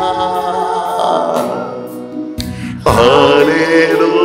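A man singing a devotional worship song into a microphone: he holds one long note that fades away about two and a half seconds in, then a new, loud phrase begins about three seconds in.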